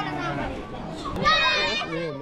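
Speech: a man says a few words, then a higher child's voice joins, amid the voices of children playing.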